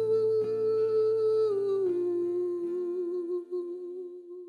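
A man humming a long held note with a slight waver that steps down in pitch about a second and a half in, over strummed guitar chords. The strumming stops partway through and the hummed note fades toward the end.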